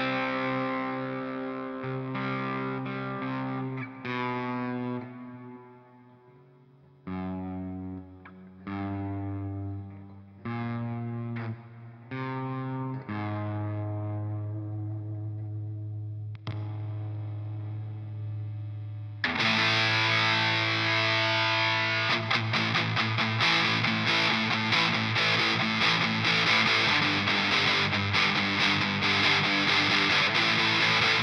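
ESP LTD M-10 electric guitar with an onboard multi-stage distortion circuit, played through an amp simulator: distorted chords left to ring out one after another with short gaps. About two-thirds of the way in, the tone jumps to a much louder, heavier distortion with fast, dense riffing, the switch's extreme-distortion stage.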